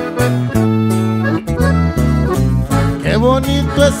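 Corrido band music, with accordion over guitar and bass, playing between sung lines. A singer gives a short spoken "¿eh?" early on, and a new sung line starts near the end.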